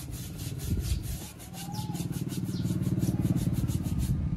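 Wet sponge scrubbing the rubber sidewall of a tractor's front tyre in quick, repeated back-and-forth strokes, washing grime out before paint goes on. A low hum builds underneath from about halfway.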